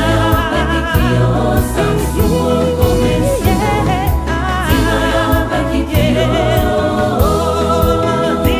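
Choir singing a gospel song over a steady beat with a low bass line, the voices holding pitched lines with vibrato.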